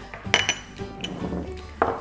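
A small ceramic bowl clinks sharply once on the counter about a third of a second in, with a brief ring. A few lighter knocks follow, under steady background music.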